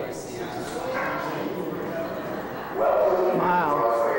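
Indistinct voices of people talking, with a louder, higher-pitched call or yelp lasting about a second near the end.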